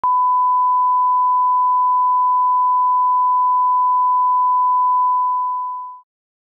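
A 1 kHz line-up test tone, the reference tone that goes with colour bars: one steady pure tone at constant pitch, fading out over the last second.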